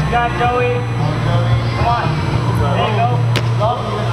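Indistinct voices in a large hall over a steady low hum, with one sharp knock a little over three seconds in.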